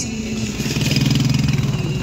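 A vehicle engine running on a rough mountain track, growing louder for about a second in the middle and then easing off.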